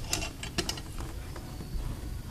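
A few light clicks and knocks in the first second as a Holley carburetor is handled on a workbench.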